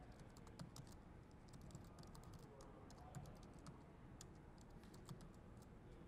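Faint typing on a laptop keyboard: quick, irregular key clicks.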